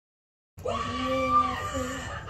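After half a second of silence, a child's voice holds one long, steady note for about a second, then a shorter, slightly lower one.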